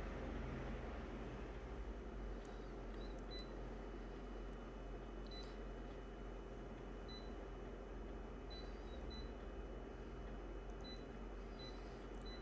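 Photocopier touchscreen giving short, high key-press beeps, about nine scattered at irregular intervals as settings are tapped, over a low steady machine hum.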